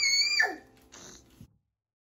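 A young child's high-pitched squeal, held on one note and then falling away about half a second in, over faint background music.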